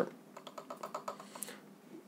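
A few faint, light clicks and taps in quick irregular succession.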